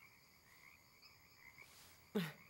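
Near silence: a faint night chorus of frogs, a wavering high chirping.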